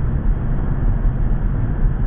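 Steady road and engine rumble of a car driving at a constant speed through a road tunnel, heard from inside the cabin.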